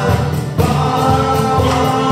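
A man and a woman singing a Polish Christmas carol together through microphones and a PA, with acoustic guitar, a second guitar and cajón accompanying. A short breath break comes about half a second in before the next sung phrase begins.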